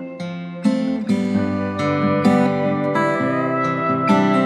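Indie-folk song in an instrumental stretch: acoustic guitar plucked and strummed, a fresh chord struck every half second or so.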